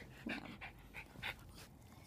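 A dog breathing close up in a few short, quick, faint breaths.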